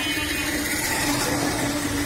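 Steady engine hum of street traffic, a constant low drone, with a short swell of hiss in the middle.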